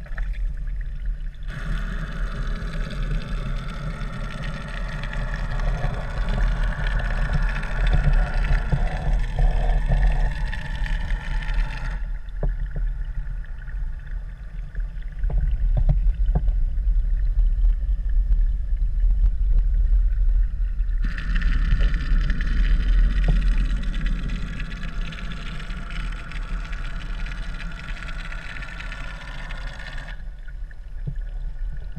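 Muffled underwater sound through a GoPro's waterproof housing: a steady low rumble of moving water. A higher hiss stops sharply about twelve seconds in and returns about nine seconds later, leaving only a few faint clicks in between.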